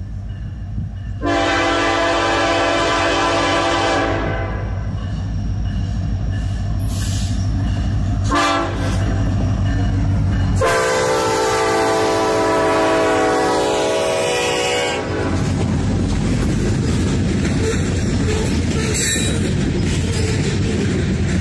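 Norfolk Southern SD70ACe diesel locomotive NS 1005 sounding its multi-chime air horn for a grade crossing: a long blast of about three seconds, a short blast, then a longer blast of about four seconds as it passes, over the diesel engine's rumble. After that the locomotives and freight cars roll past with steady wheel-on-rail noise.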